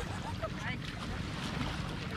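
Wind rumbling on the microphone over the wash of small waves at the shore, with a few faint voices calling briefly about half a second in.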